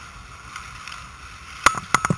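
Hockey sticks knocking on the puck and ice in a pickup game: two sharp clacks near the end, over a steady rink hiss.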